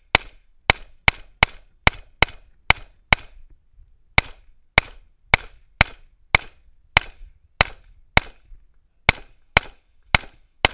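AR-15 rifle firing a fast string of about eighteen shots, roughly two a second, broken by two pauses of about a second, one about three seconds in and one past eight seconds.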